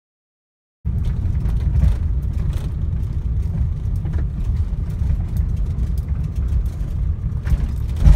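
Car in motion heard from inside the cabin: a steady low rumble of engine and road noise with a few light knocks. It cuts in suddenly about a second in, after dead silence.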